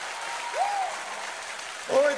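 A live congregation applauding at the end of a song, with a single voice calling out briefly about half a second in.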